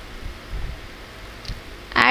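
Faint hiss with a few soft, low knocks as a spatula pushes stir-fried vegetables out of a pan onto a plate.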